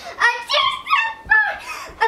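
Beagle barking in a quick run of short calls.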